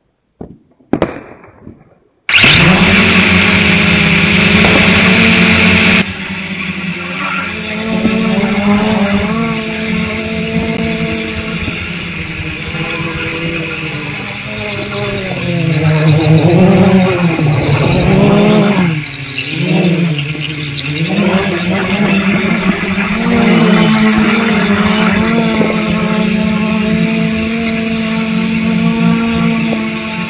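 Dromida Vista quadcopter's motors and propellers whining, the pitch rising and falling again and again as the throttle changes.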